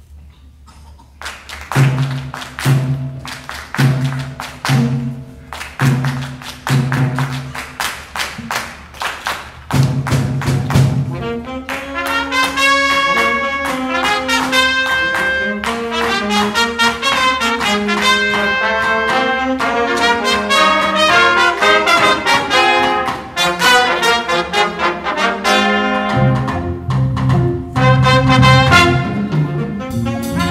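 School jazz combo starting a bomba tune. After a brief quiet moment, drums and bass play short accented hits about once a second. About twelve seconds in, trumpets and trombone come in with the melody over the rhythm section.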